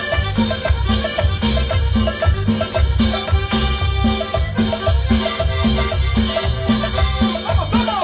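Live cumbia band playing an instrumental passage: drum kit with cymbals and timbales keeping a steady dance beat under an accordion, with a bass note about twice a second.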